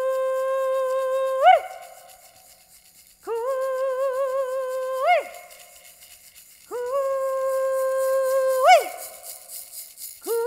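A woman's voice singing three long held notes in an Indigenous prayer song, each ending in a sharp upward yelp that drops away, the second with a wavering vibrato. A wooden hand rattle is shaken softly behind the voice.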